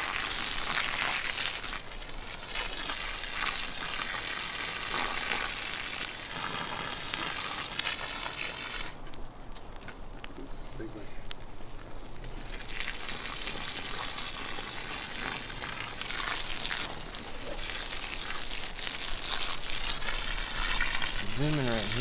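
A redwood model house burning as an open fire, with a steady crackling and hissing of the flames and embers. The high hiss drops away for a few seconds in the middle.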